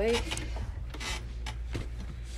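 Soft rustling with a few light clicks, picked up by a handheld microphone, over a steady low hum.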